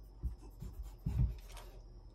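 A few soft low thumps with rustling, from a person moving about and sitting down on a piano bench; the loudest thump comes a little after one second in.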